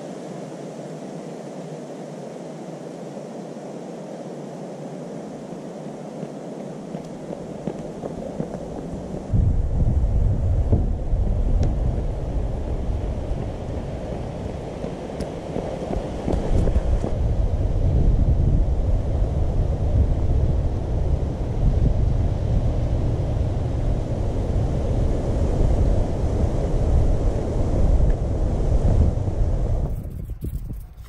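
Wind blowing over the microphone: a steady hiss at first, turning into a louder, low buffeting rumble about nine seconds in.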